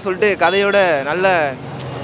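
A young man speaking into a handheld microphone, his voice stopping about one and a half seconds in for a short pause.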